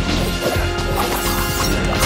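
Film score music over fight sound effects: a rapid run of weapon strikes, clashes and smashing impacts.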